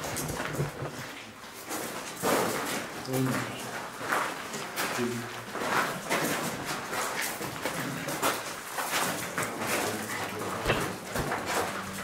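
Shuffling footsteps crunching on a gravel mine floor, with a few brief voice fragments about three and five seconds in.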